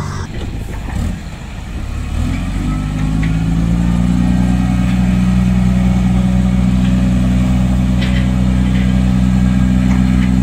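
Ten-wheel dump truck's diesel engine climbing in speed over a couple of seconds, then holding steady at raised revs while it drives the hydraulic hoist that tips the loaded bed to dump soil.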